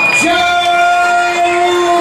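A voice holding one long, steady drawn-out note, like a ring announcer stretching out a call as the winner's arm is raised.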